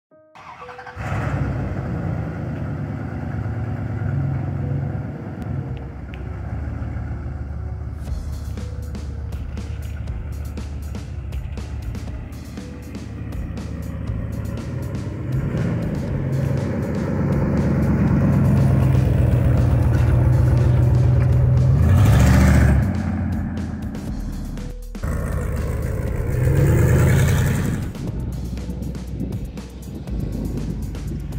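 Dodge Ram 1500 pickup engine running as the truck drives past, growing louder to a peak about 22 seconds in and swelling again near 27 seconds, with music playing over it.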